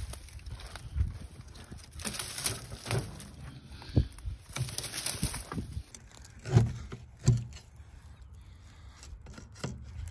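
Dry vines rustling and snapping as they are pulled off a brick wall, then a pry bar wedged and levered under a weathered wooden window sill, with two sharp knocks a little after halfway.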